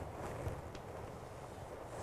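Faint chalk on a blackboard as a single stroke is drawn, with a couple of light ticks, over a low steady room hum.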